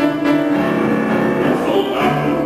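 Grand piano playing a classical accompaniment passage.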